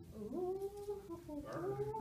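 A woman's voice drawn out in a long, whiny, sing-song tone with slow pitch glides, softer than ordinary talk, as if mimicking someone in a story.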